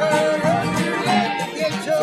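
Recorded folk song, a voice singing over plucked string instruments, played back as the 'foreground' track from computer source separation: the vocal melody is pulled forward and the instrumentation reduced.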